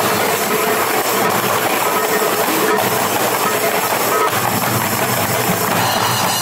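Marawis percussion ensemble playing a fast, dense, unbroken rhythm on small hand-held marawis drums, darbuka and large hajir drums.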